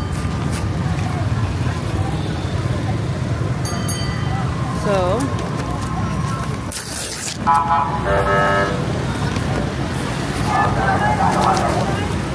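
Busy street traffic of motorbikes and cars, a constant engine rumble, with a vehicle horn honking for about a second a little past halfway and passers-by talking near the end.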